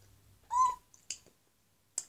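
A girl's short, high-pitched vocal sound about half a second in, a single brief 'ooh'-like call that bends up in pitch. A short breathy hiss follows.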